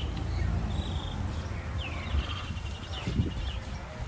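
Small birds chirping, with short rapid trills and a few downward-sweeping calls, over a steady low outdoor rumble, with a brief low thump about three seconds in.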